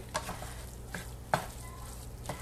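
Wooden spoon stirring cauliflower rice in a frying pan, with a faint sizzle and a few light scrapes and taps of the spoon against the pan. The sharpest tap comes a little past halfway.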